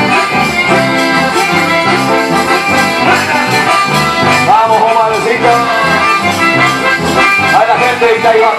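Live band playing an instrumental passage led by two accordions, over electric bass and guitars with a steady rhythmic bass line.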